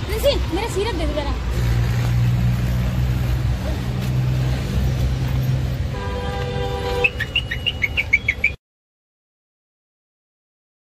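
Roadside traffic: a vehicle engine running with a steady low rumble, then a horn sounding for about a second, followed by birds chirping. The sound cuts off abruptly about eight and a half seconds in.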